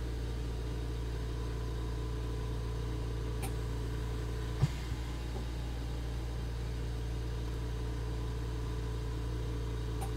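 Steady low background hum of room or equipment noise, with one short knock about halfway through, the loudest sound, and a faint tick a second before it.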